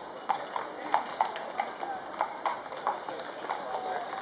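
Hooves of several cavalry horses clip-clopping, sharp irregular knocks about three a second, with voices in the background.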